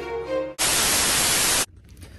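The end of a music passage, then a loud burst of TV-style static hiss about a second long that starts and cuts off abruptly: a static transition sound effect.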